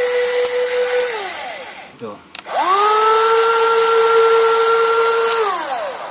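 Electric track drive motor of a WLtoys 16800 RC excavator whining as it drives one track to turn the machine. The steady whine winds down about a second in. After a click it winds up again, runs steadily for about three seconds, and winds down near the end.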